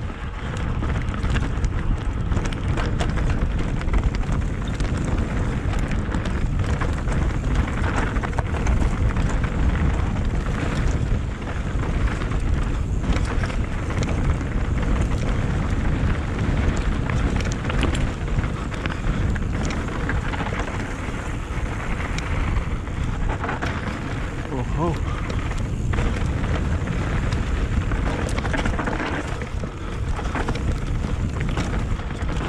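Mountain bike riding down a dry, rocky singletrack, heard from a helmet-mounted action camera: heavy wind rumble on the microphone over the tyres rolling on dirt and loose stones, with frequent clicks and rattles from the bike.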